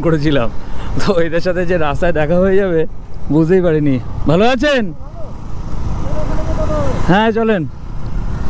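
A man's voice in short bursts of talk and calls over the steady running of a KTM Duke 200's single-cylinder engine on the move, with road noise.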